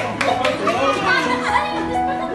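Background music with held notes, and several people's voices talking over it.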